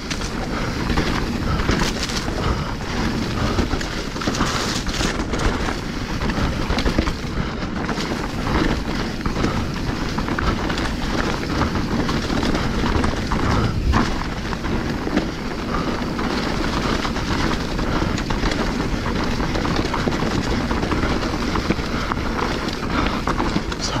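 Specialized Stumpjumper Evo Alloy mountain bike ridden fast down dirt singletrack: a steady rush of tyres on the trail, with constant clattering and rattling from the bike over the rough ground.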